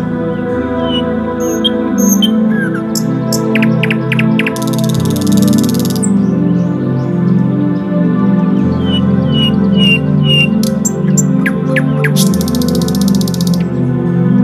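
Soft ambient music of sustained, slowly shifting chords with birdsong layered over it. Birds give series of short falling chirps and quick sharp notes, and twice a dense buzzy trill lasting about a second. The same sequence of calls comes round twice, like a looped nature-sound track.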